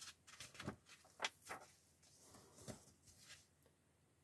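Faint, scattered paper rustles as the pages of a magazine are handled and turned.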